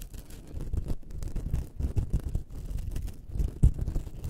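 Scratching on a star-shaped object in quick, irregular strokes.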